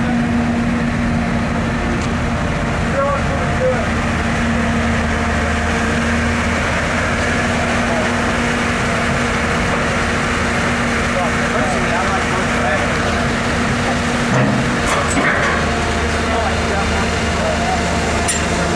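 Caterpillar 319D LN excavator's diesel engine running steadily with a constant hum, and a short burst of metal clanks about three-quarters of the way through.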